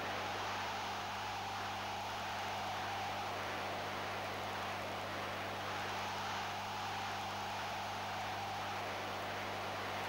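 Steady hiss with a low, constant mains-type hum from an old broadcast soundtrack, unchanging and without distinct events.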